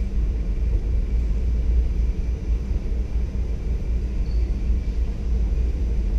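Room tone of a large gymnasium holding a hushed, standing crowd: a steady low rumble with a faint wash of room noise and no voices.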